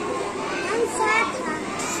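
Low chatter of a group of young children, with a few soft spoken words partway through.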